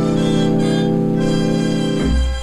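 Dance band holding the sustained closing chord of a slow ballad, with the upper notes shifting about a second in.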